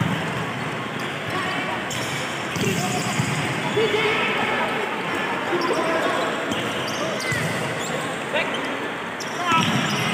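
Indoor volleyball rally: the ball struck by hands several times, with players shouting to each other.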